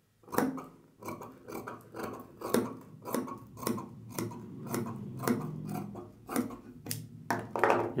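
Tailoring scissors cutting through blouse fabric on a table: a steady run of short snips, about two a second.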